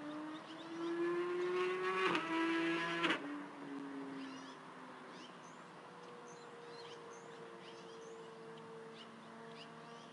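A motor's drone, a steady hum with overtones whose pitch slowly rises and is loudest in the first three seconds, then cuts off abruptly and gives way to a fainter hum that slowly falls. Faint high bird chirps come and go throughout.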